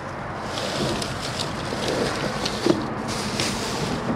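Plastic bags and crumpled paper rustling and crinkling under a gloved hand rummaging through them, with irregular short crackles.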